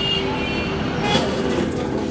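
Busy city street traffic: a steady wash of vehicle engines and tyres with short horn toots.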